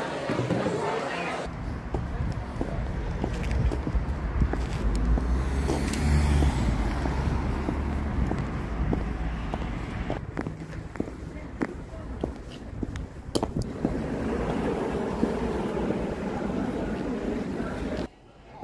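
Outdoor street ambience with passing traffic under a heavy low rumble, followed in the second half by scattered sharp clicks and knocks.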